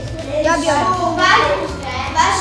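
Children talking, their voices overlapping.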